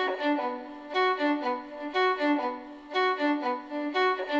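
Machine-learning-synthesized violin from Magenta's Tone Transfer (DDSP), playing a melody of stepped notes in short phrases that swell and fade about once a second.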